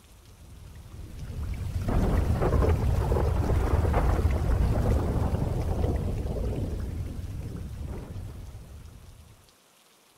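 Thunder rumbling over rain. The low rolling rumble swells up about a second in, holds for several seconds, then slowly dies away.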